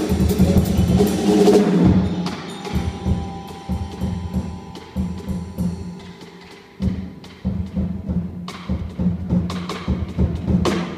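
Free-improvised vibraphone and drum kit: ringing vibraphone notes over loose, low mallet-like drum strikes. The playing is dense for the first couple of seconds, then thins out and quiets, with a few held vibraphone tones, before the drum strikes pick up again about seven seconds in.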